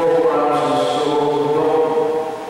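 Catholic priest chanting a liturgical text into a handheld microphone in a single male voice, holding long, nearly level notes.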